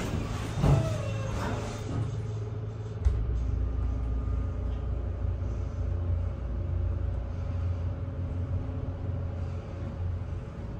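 Dover Impulse hydraulic elevator: a thud under a second in as the doors close, then, about three seconds in, a thump as the hydraulic pump starts and a steady low hum while the car rises.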